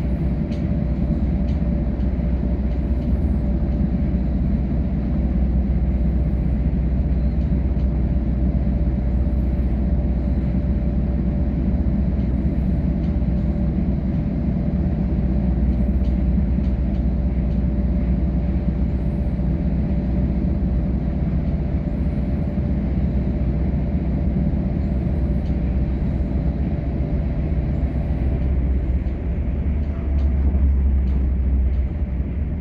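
Passenger train running at speed, heard from inside the carriage: a steady rumble of wheels on rail with a steady hum of a few close tones over it and faint high chirps every second or two.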